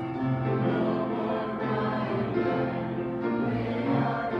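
Church congregation singing a slow hymn together, held notes changing every half second or so, accompanied by a church organ.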